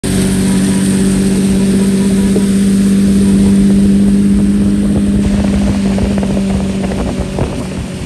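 Lamborghini Aventador's V12 cruising at a steady, even note over the hiss of tyres on a rain-soaked road, with a few sharp pops near the end.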